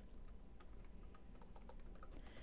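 Faint computer keyboard typing: a short run of soft keystrokes.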